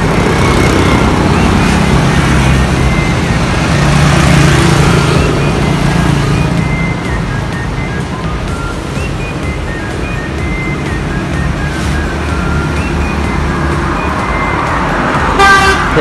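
Road traffic: a motor vehicle passing on the street, loudest about four seconds in, over a steady low engine hum.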